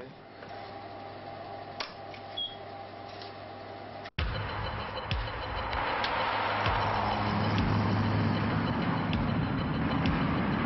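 A steady low room hum with a single click, cut off suddenly about four seconds in by road traffic noise: cars running and tyres rushing on a motorway.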